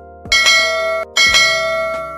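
Two bright bell dings about a second apart, each ringing out, in a subscribe-button animation. Behind them plays a music bed of held notes and low drum hits.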